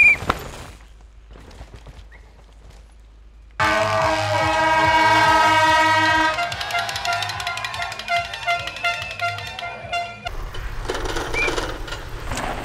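A brief loud rush with a short high squeal as a downhill bike passes, then, about a third of the way in, spectators' air horns blaring in a loud held chord of several tones that breaks into irregular short blasts until near the end.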